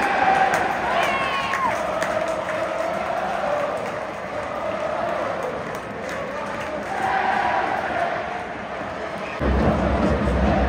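Football crowd in the stand singing a chant together, a sustained mass of voices. A low rumble comes in near the end.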